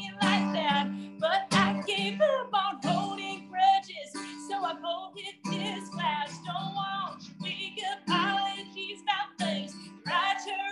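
A woman singing a song while strumming her own acoustic guitar.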